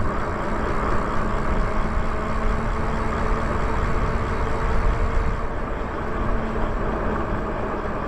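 Wind rumbling on the microphone while riding an electric bike at a steady pace along a paved street, with a faint steady hum from the bike's motor underneath.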